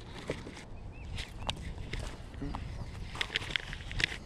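Scattered light clicks and knocks from a baitcasting reel and rod being handled in a kayak, with a cluster of sharper clicks about three seconds in, over a low rumble.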